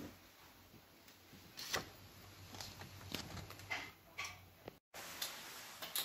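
Quiet kitchen with a low steady hum and a few light, scattered clicks and knocks, like cookware or utensils being handled. The sound drops out completely for a moment shortly before the end.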